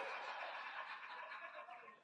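People laughing and chuckling, the laughter dying away toward the end.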